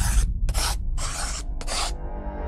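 Four quick scratchy swish sound effects, each about a quarter second long and about half a second apart, over a steady low bass rumble, accompanying an animated logo intro.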